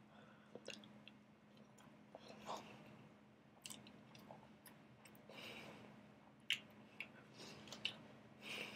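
A person chewing a last big mouthful of burrito, faintly: irregular small wet clicks and soft mouth smacks, with one sharper click about six and a half seconds in, over a low steady hum.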